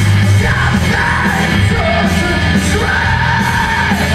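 Rock band playing live and loud, with heavy drums and bass under distorted guitars and shouted vocals, heard from the audience seats.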